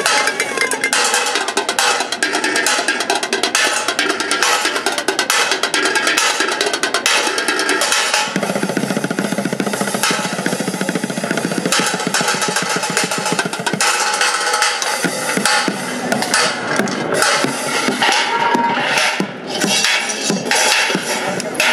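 Fast, continuous drumming with sticks on an improvised kit of metal pots, pans, cymbals and a plastic bucket. In the middle comes a stretch of very fast rolls with a deeper tone.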